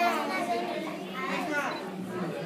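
Children's voices talking and calling out, several overlapping, none of it clear words.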